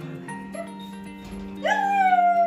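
Background music with steady held notes; near the end a dog lets out a loud, long whine that rises sharply and then slowly sinks in pitch.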